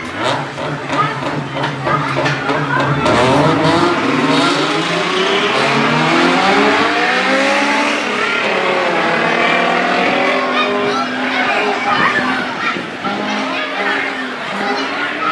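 Two V8-class race cars, a VW Passat and a Civic hatchback, launching together from a standing start and racing at full throttle. Engine pitch climbs sharply through the gears in the first few seconds, then the engines run loud, rising and falling.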